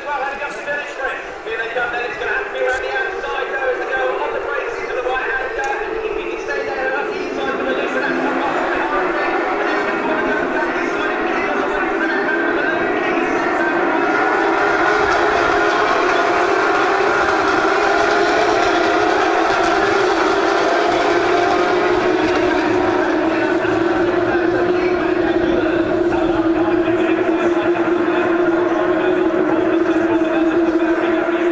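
A pack of Porsche 911 GT3 Cup racing cars running at full throttle around the circuit, their flat-six engines blending into one sustained drone that swells over the first fifteen seconds or so and then holds steady.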